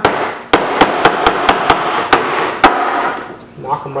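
A hammer tapping the centre pins out of the plastic push-pin clips that hold a 2003 Honda Civic front grille. About ten quick light blows come at about four a second and stop a little before three seconds in.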